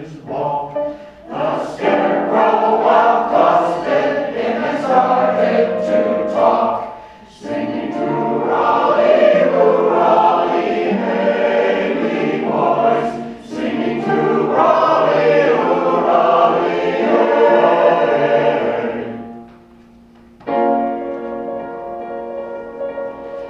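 A large mixed choir of men and women singing, phrase by phrase, with short breaks between phrases and a longer pause near the end before the voices come back in.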